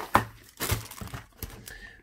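A cardboard box is knocked and tipped, then a plastic bag of model-kit parts crinkles as it is handled. A single sharp knock comes just after the start, then scattered short rustles.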